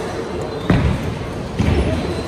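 Two heavy thuds about a second apart, bowling balls landing on the wooden lanes, over the steady din of a busy bowling alley with voices.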